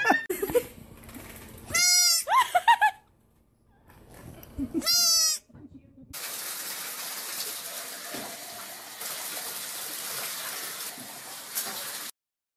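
Goat bleating loudly twice, about three seconds apart, each a short high call. From about six seconds in, a steady hiss takes over.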